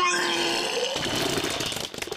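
A man retching and vomiting: one long strained heave, a brief low groan over a gushing noise that fades out near the end.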